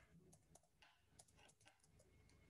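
Faint keystrokes on a computer keyboard, a run of about ten quick taps, with near silence between them.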